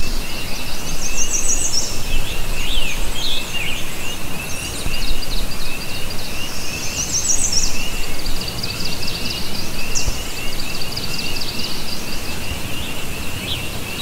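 Outdoor ambience of songbirds chirping and calling, with a few rapid high trills, over a steady low rushing background.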